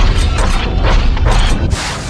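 Loud mechanical clanking sound effects, a run of sharp metallic clanks about three a second over a deep rumble, with a burst of noise near the end.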